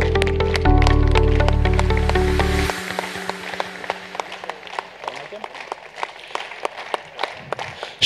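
Music with held notes and a deep bass stops abruptly about three seconds in, over audience applause. The clapping continues more quietly afterwards and thins out to scattered claps.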